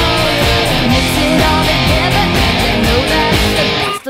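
Electric guitar, a single-cut Les Paul-style with humbuckers, strummed along to a loud pop-rock backing track with a steady drum beat.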